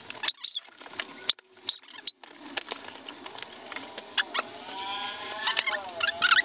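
Packing tape ripped off and cardboard box flaps pulled open: a quick run of sharp rips and clicks in the first two seconds. A dog whines in high, wavering tones, growing stronger near the end.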